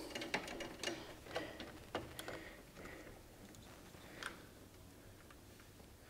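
Faint, irregular small clicks and light taps from a borescope's cable and probe being handled and fed into an engine's throttle body, dying away to near silence over the last couple of seconds.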